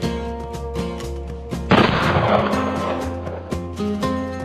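Plucked acoustic guitar music, with a single sudden pistol-shot bang about two seconds in whose noise dies away over about a second.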